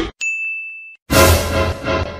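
A single high electronic ding, held steady for under a second and then cut off sharply. Louder music comes in about a second in.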